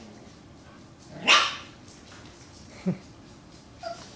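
A puppy barks once, sharp and high-pitched, about a second in; a brief, lower, falling sound follows near the three-second mark.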